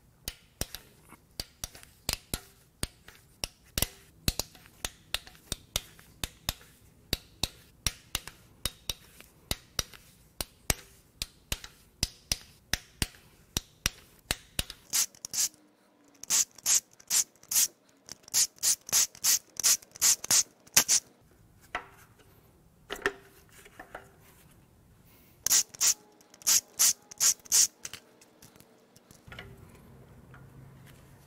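A hand ratchet clicking in a steady rhythm, about two to three clicks a second, as it backs out the cam cap bolts on a Mercedes M156 V8 cylinder head. About halfway through, a cordless impact driver takes over, spinning bolts out in short bursts, with another cluster near the end.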